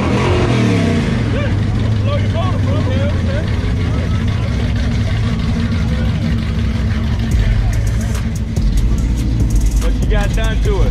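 Built classic muscle car's V8 engine running: the revs fall off just after the start, then it settles into a steady, deep idle.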